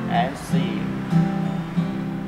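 Acoustic guitar strummed in steady chords, working through a C–Am–F–C progression. A brief spoken word cuts in about a quarter of a second in.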